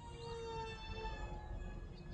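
Brushed electric motor of an SG Pinecone F-22 micro RC jet whining in flight: a faint, steady high-pitched tone with overtones, drifting slightly lower in pitch.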